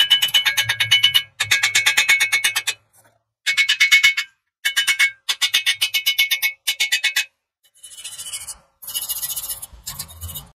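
Angle grinder with a wire cup brush scrubbing a steel weld bead clean, with a steady motor whine and a rapid chattering of wire on metal. It comes in a string of short bursts about a second long, with brief pauses between them.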